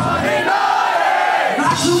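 Concert crowd shouting together in one long yell while the rock band drops out; the band's bass and drums come back in near the end.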